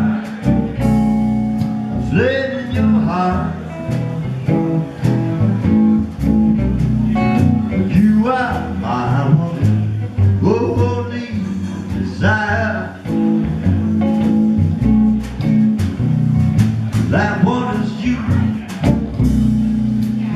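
A live blues trio playing: electric guitar with upright bass and drums.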